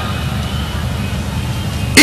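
Steady low rumble of ambience from a very large audience at a lecture venue, heard through the hall microphone in a pause in the speech.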